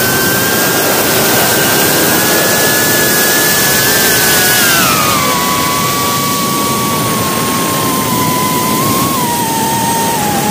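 Motor and propeller whine of a small remote-controlled aircraft, heard from its onboard camera: one steady whine that drops in pitch about halfway through as the throttle is eased, then holds. A constant rush of wind runs beneath it.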